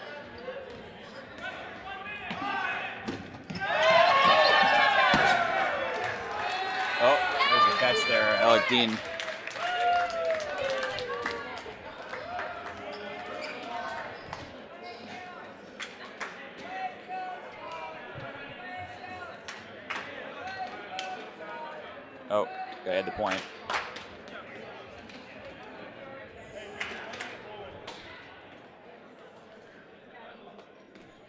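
Rubber dodgeballs bouncing and smacking on a hardwood gym floor, echoing in a large hall. Players shout loudly from about four to nine seconds in, and quieter voices carry on between scattered ball knocks.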